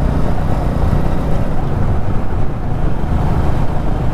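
Royal Enfield Meteor 350 motorcycle cruising along an open road, its single-cylinder engine running steadily under a heavy low rumble of riding noise.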